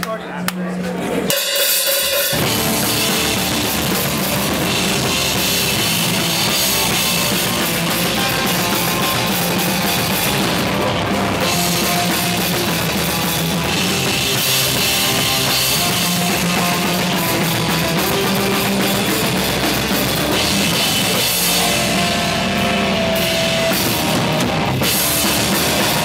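Hardcore band playing live through the PA: the song starts about a second in, with the full band of drums and distorted guitars coming in about two seconds in and going on loud and dense.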